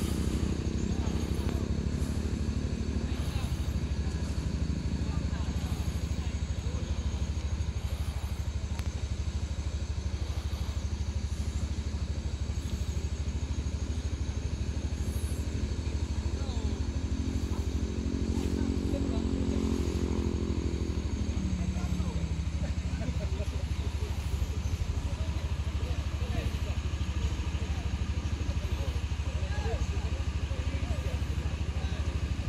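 Vehicle engine running over a steady low hum; the engine note rises and then falls back over several seconds in the middle.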